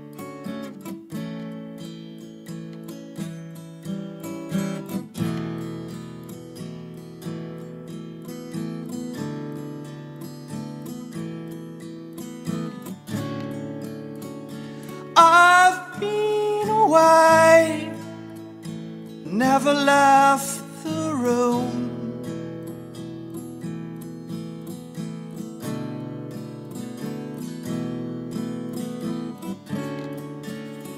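Acoustic singer-songwriter music: steady strummed and picked acoustic guitar, with a louder melodic lead line coming in twice around the middle.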